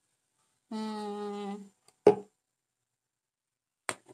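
A person hums a short, steady "mm" for about a second. About two seconds in there is one sharp knock, the loudest sound, and near the end a faint click.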